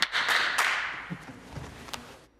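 Brief applause from a handful of people in a large chamber, fading away over about a second.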